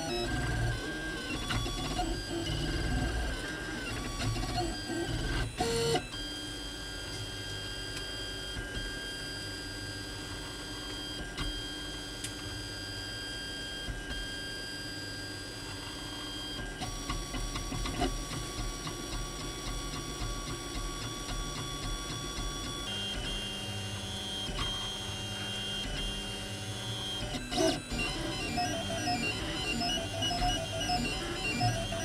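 Printrbot Simple Metal 3D printer's stepper motors whining as it prints, holding steady, musical-sounding tones for several seconds at a time. The pitch changes a few times as the moves change, with occasional sharp clicks.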